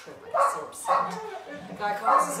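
Puppy barking: two short yips about half a second apart, then a rising whine near the end.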